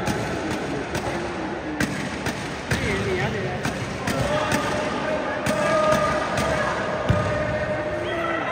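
Echoing indoor futsal hall during play: many voices calling and chattering over a steady din, with sharp knocks scattered through as the ball is kicked and struck.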